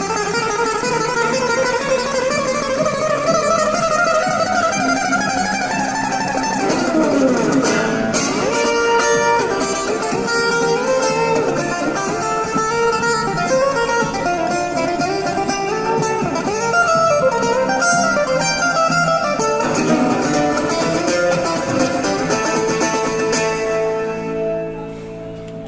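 Amplified acoustic guitar played solo, an instrumental passage with no singing. The pitch climbs steadily over the first six seconds, then moves through quicker, shifting picked notes.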